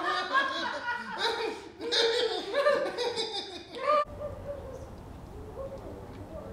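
Several people laughing together for about four seconds, cut off abruptly, followed by a faint steady low hum.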